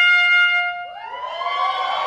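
Trumpet holding one long, steady note that stops a little under a second in. Several overlapping tones then glide upward and hold.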